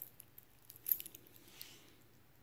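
Stainless steel link bracelet of a Seiko Spirit Smart SCEB009 chronograph clinking quietly as the watch is picked up and turned in the hand, with a few small clicks and one brighter jingle about a second in.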